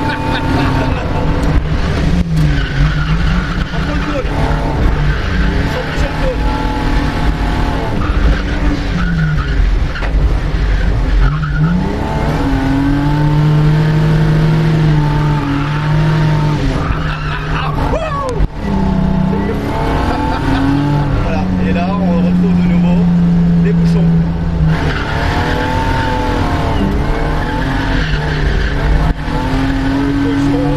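BMW E36 325i's straight-six engine heard from inside the cabin on a drift circuit, revs rising and falling repeatedly, with two long stretches held at steady high revs, and tyres skidding.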